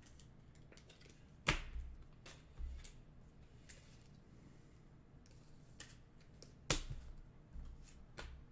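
Trading cards being handled at a table: two sharp snaps, about a second and a half in and again near the end, with faint ticks of cards between them.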